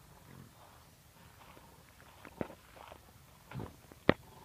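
Wild pigs foraging: faint scattered clicks and snaps, with one short low grunt about three and a half seconds in.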